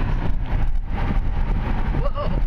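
Road and engine noise inside the cab of a 1997 Chevrolet S10 pickup on the move: a steady low rumble.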